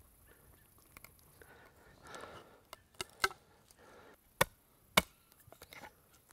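A small knife blade carving a notch in a split piece of wood resting on a stump: a soft scrape, then sharp wooden knocks and cracks. The two loudest come about half a second apart late in the clip.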